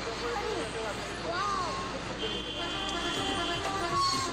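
Busy city traffic heard from inside a moving taxi, with voices in the car. Music comes in during the second half.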